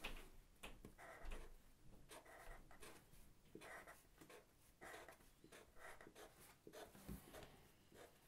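Faint scratching of Sharpie felt-tip markers drawing short strokes on paper, in a run of brief, irregular strokes.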